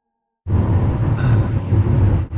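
Silence for about half a second, then a steady low rumble of road and engine noise inside a moving car's cabin.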